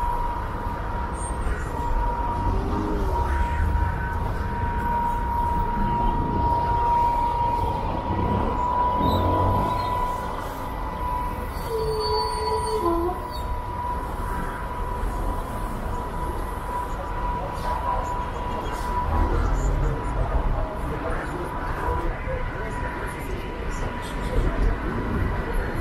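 Busy city street traffic: steady low rumble of engines and tyres with a continuous high-pitched whine, strongest in the first half. Passersby's voices come and go.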